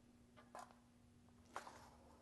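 Near silence, with two faint clicks about a second apart over a faint steady hum, from a hand grease gun being worked on a grease fitting.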